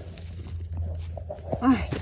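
Faint rustling and crackling of dry leaf litter as a hand brushes around a porcini mushroom, over a steady low hum, followed near the end by a short spoken exclamation.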